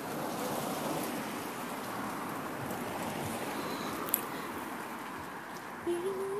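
Steady, even hiss of noise with one sharp click about four seconds in.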